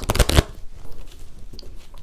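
A deck of tarot cards shuffled by hand: a quick run of sharp card flicks in the first half second, then only faint handling.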